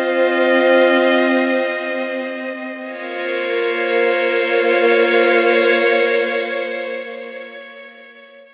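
Sampled solo violin (8Dio Studio Solo Violin library) played from a keyboard in its one-bow arc articulation with little vibrato: held notes swell up and die away, one arc ending about three seconds in and a second rising and fading out near the end. The sound is expressive and a little soft.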